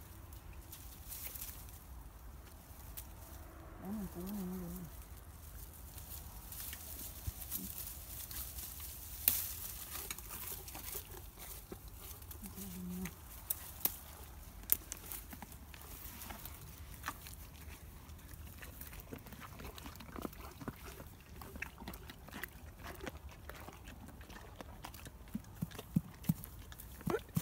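Leaves and twigs of a rose hip bush rustling and crackling as it is handled, with scattered small clicks over a steady low rumble. Two short low grunts or hums come about 4 and 13 seconds in.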